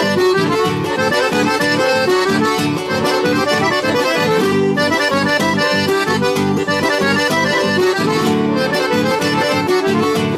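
Two piano accordions playing a lively instrumental tune together, with an acoustic guitar strumming a steady rhythm underneath.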